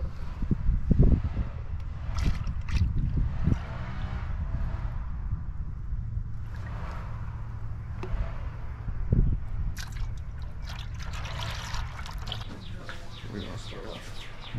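Liquid sloshing and trickling in plastic buckets and a jug as they are handled, with short plastic knocks in the first few seconds and again near the end, over a steady low rumble.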